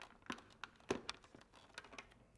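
Faint, light plastic clicks and scrapes from a helmet's clear visor being slid forward off its side pivot mount and lifted away, a few separate ticks with the clearest about a second in.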